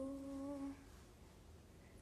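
A woman humming one held, steady note that stops just under a second in.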